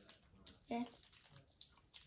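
Faint rustling and small clicks of candy wrappers being handled in the fingers.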